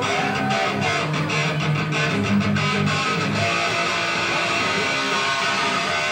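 Punk rock band playing live, heard from the crowd: strummed electric guitar and bass in an instrumental stretch with no vocals.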